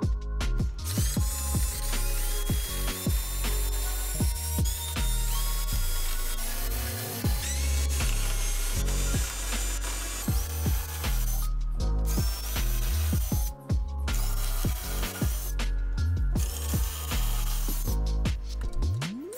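Cordless drill driving screws into melamine-faced particleboard in repeated short bursts, each run-up rising in pitch, heard under background music.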